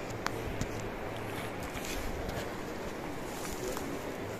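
Light rustling and a few sharp clicks over steady outdoor background noise, as of a person moving through forest undergrowth.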